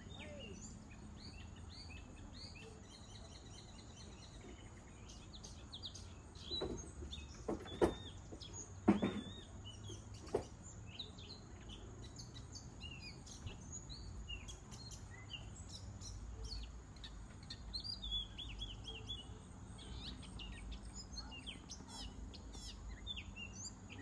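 Small birds chirping and calling on and off throughout, over a faint steady low hum. A few sharp knocks come about a quarter to halfway through and are the loudest sounds.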